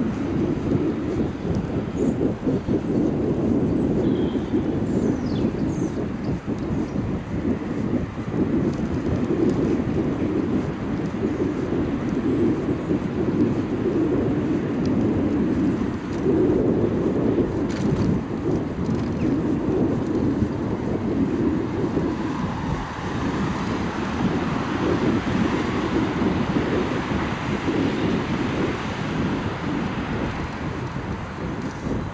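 Wind buffeting the microphone of a camera riding on a moving bicycle, a steady fluttering low rumble mixed with tyre noise on the asphalt cycle path. A higher hiss swells over the last several seconds.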